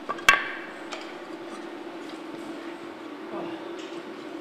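A sharp metallic clink with a brief ring as aluminum extrusion frame parts knock together, followed by a fainter click a moment later, over a steady low hum.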